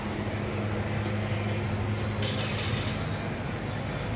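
Steady low machine hum in a workshop, with a short hiss a little over two seconds in.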